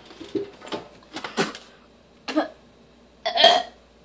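A boy coughing and clearing his throat in short bursts while eating dry dog food, with crumbs still in his mouth; the loudest cough comes near the end.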